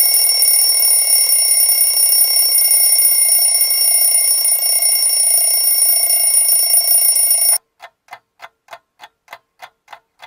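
A steady, high ringing that cuts off suddenly about seven and a half seconds in, followed by regular ticking at about four ticks a second.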